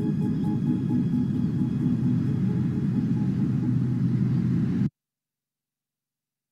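Deep, sustained rumbling drone of a film soundtrack, with a few held tones above it, cutting off abruptly about five seconds in into dead silence.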